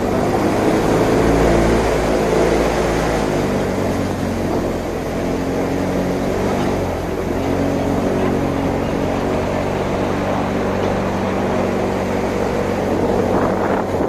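A boat's engine running steadily at a constant pitch as the boat moves through the marsh.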